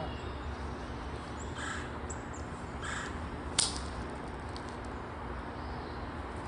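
A golf iron swung at a ball on a grass lawn, striking it with one sharp click about three and a half seconds in. Two bird calls sound before it.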